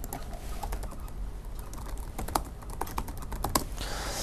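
Typing on a laptop keyboard: light, irregular key clicks, quiet, with a quicker run of them in the second half.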